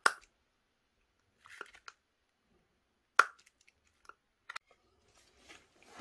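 Knife blade cutting into the rubber and plastic of a Milwaukee battery casing: a few sharp clicks and crunches with quiet gaps between them, the loudest right at the start and about three seconds in.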